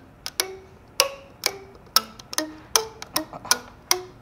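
A 3D-printed plastic musical fidget, a scaled-up version with tines doubled in length, plucked note by note: about a dozen sharp clicks, each followed by a short ringing tone at a different pitch, played as a slow tune. The notes come out lower than the original's but somewhat out of tune, because simply doubling the size does not scale the pitch properly.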